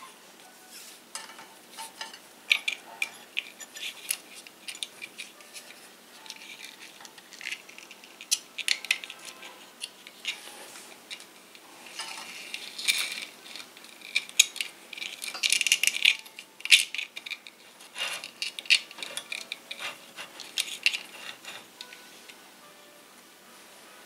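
Irregular light clicks, taps and rustles of a rubber timing belt being handled and looped around the X-axis stepper motor on a 3D printer's acrylic frame. The sounds come in scattered clusters and thin out near the end.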